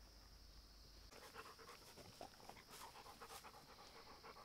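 A Rottweiler panting, faint and close, beginning about a second in.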